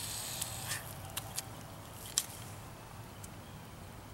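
Beer foam fizzing as a freshly opened bottle of Belgian strong ale gushes over, having been barely tapped. The hiss fades over the first two seconds or so, with a few small sharp clicks.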